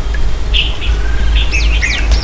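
A small bird chirping: one short chirp about half a second in, then three quick calls that sweep down in pitch near the end, over a steady low rumble.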